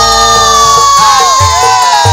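Live campursari band: one long held note, drifting slightly down in pitch, over a low sustained bass note, with the kendang drum's strokes coming back in about a second in.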